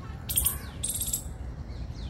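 Birds calling in a park: faint falling whistled notes and two short, harsh, high-pitched bursts, one about a third of a second in and one about a second in.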